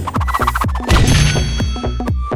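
A rapid run of sharp percussive hits, about five a second, with low thuds dropping in pitch under ringing, bell-like tones: an edited-in transition sound effect.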